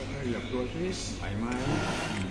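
People talking over a steady low hum.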